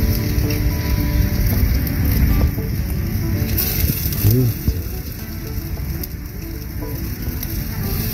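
Metal tongs clicking and scraping on a wire-mesh grill grate as marinated chicken pieces are turned over charcoal, with the meat sizzling and the coals crackling.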